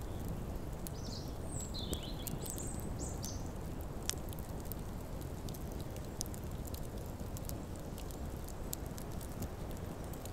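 Outdoor ambience: a steady low rumble with birds chirping a few short calls in the first few seconds, and scattered faint clicks throughout.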